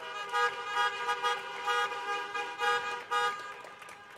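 Many car horns honking at once in overlapping short and long blasts, an audience sounding horns as applause, thinning out near the end.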